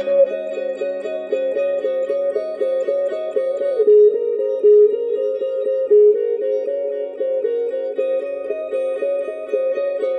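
Electric guitar playing a fast, even stream of picked notes over lower ringing notes, the melody stepping down about four seconds in and climbing back.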